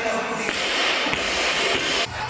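Gym noise of voices and shouting over background music, with a couple of faint thuds about half a second and a second in.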